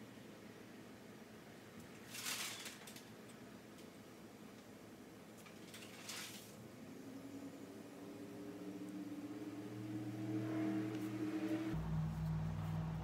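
Two brief rustles, about two and six seconds in, from art supplies being handled. Then a low mechanical hum that rises slightly in pitch and grows steadily louder through the second half.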